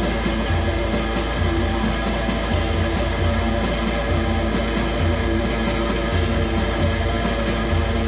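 Live rock band playing an instrumental passage: electric guitar with two tambourines being shaken, over a steady low pulse.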